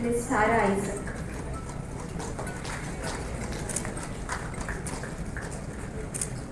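A voice says a word or two just after the start. After that come scattered sharp clicks and knocks of hard shoes stepping on a wooden stage floor.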